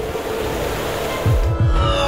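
Outro music: a noisy swell, then deep bass hits a little over a second in.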